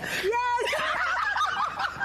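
High-pitched, wavering laughter, with other voices mixed in.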